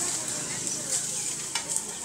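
Hand tools scraping and raking dry leaves and litter across bare earth, with a steady rustling hiss and a few sharper scrapes about a second in and a second and a half in.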